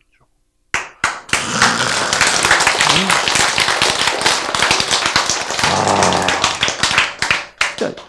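An audience clapping: dense, irregular applause that starts just under a second in and dies away near the end, with a few voices mixed in.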